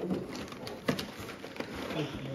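Hands working at the taped end of a cardboard box: scratching and tearing at clear packing tape and cardboard, with a few short sharp clicks.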